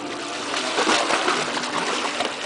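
Water splashing and sloshing, swelling loudest about a second in.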